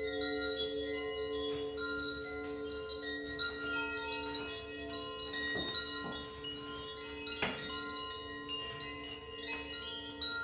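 Metal chimes tinkling in many small, scattered rings over a steady hum of lingering gong resonance, with one brighter strike about three quarters of the way through.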